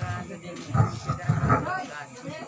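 Voices of several people talking and calling out, words not clear.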